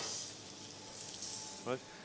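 Beef searing in a hot, oiled frying pan: a steady sizzle, strongest in the first second or so. This sizzle is the sign that the pan is hot enough to sear; without it the meat won't take colour.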